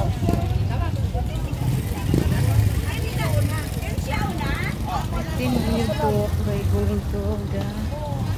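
Indistinct voices talking over a steady low engine rumble from a motorcycle.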